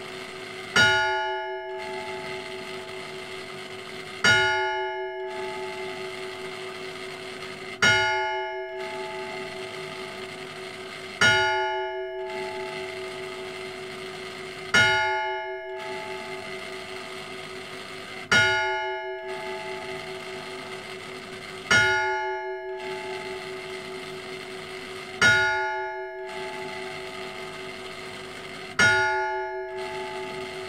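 Bronze church bell cast by Cornelius Ammeroy in 1597 (601 mm, nominal F-sharp), struck nine times at an even pace of about one stroke every three and a half seconds. Each stroke is a bright clang that settles into a long, slowly fading hum ringing on into the next.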